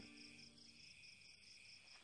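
Near silence with faint, high-pitched cricket chirping, a fast even trill.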